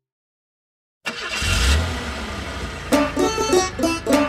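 Silence for about a second, then a motor-vehicle engine sound effect starts suddenly: a rumble with hiss, loudest just after it starts. Plucked banjo music comes in about three seconds in.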